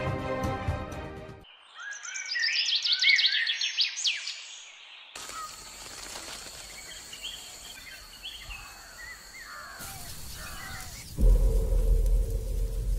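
Background music fades out, and a run of quick, high, chirping bird calls follows for about three seconds. Outdoor ambience comes next, with a steady high-pitched whine and a few faint calls, until the music returns with a loud low hit near the end.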